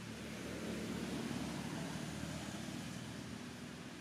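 A low engine rumble from a distant motor vehicle that swells about a second in and then fades away, as the vehicle passes by.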